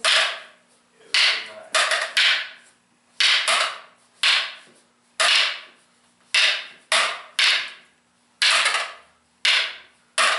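Wooden fighting sticks clacking against each other as partners trade strikes in a double-stick drill. About fourteen sharp clacks come at irregular gaps of half a second to a second, several in quick pairs, each ringing briefly.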